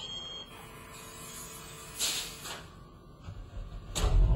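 Quiet passage with a faint low rumble and one brief whoosh about halfway through.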